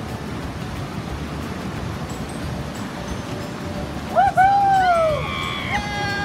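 Rushing water of a whitewater rafting channel, a steady hiss, then about four seconds in the rafters let out several loud, long whooping shouts.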